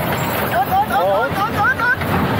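Riders on a suspended roller coaster laughing and calling out in quick short bursts, over the steady rush of wind and rumble of the coaster car on its track.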